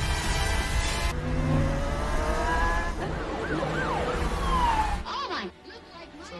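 Car noise with sirens: tones rising, wailing up and down, then a long falling glide like a siren going past. All of it cuts off suddenly about five seconds in.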